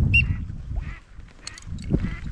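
Teal-type whistle: one short, high whistled peep that dips and then holds its pitch about a quarter second in, a few faint high peeps near the end, and low wind rumble on the microphone early on.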